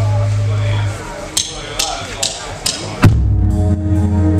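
A low, steady amplifier hum stops about a second in, then four evenly spaced clicks of drumsticks count the rock band in, and the full band comes in together on a loud hit of drums and electric guitars a little after three seconds.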